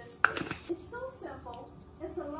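A seasoning shaker makes one sharp click about a quarter second in, with a softer tap shortly after, as it is handled while seasoning is shaken over potato salad. Faint speech follows.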